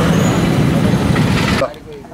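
Busy street noise: a crowd talking over the running engines of vehicles. It cuts off abruptly about one and a half seconds in.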